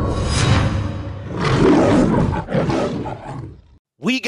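Lion-roar sound effect closing a logo intro, over the tail of the intro music; it swells about a second and a half in, then dies away shortly before the end.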